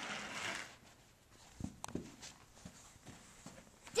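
Soft rustling, then a few light, scattered clicks and knocks from a child shifting on carpet beside wooden toy train track.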